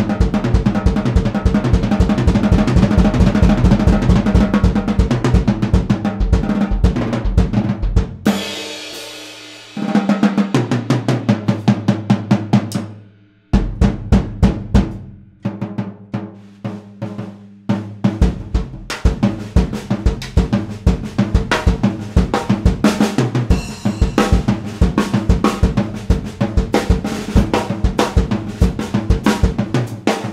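Vintage Slingerland 20/12/14 drum kit with a Craviotto titanium snare, tuned low, played with quick snare, tom and bass drum strokes. About eight seconds in a cymbal and a low drum ring out and fade. There is a short break about thirteen seconds in before the busy playing resumes.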